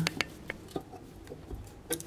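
A few sharp light clicks and taps, the clearest near the end, from handling the freshly re-hung wall-mounted washbasin and its metal mounting bracket.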